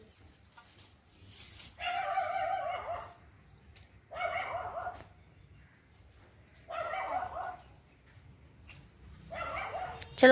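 An animal calling four times, each call high-pitched and about a second long, a couple of seconds apart.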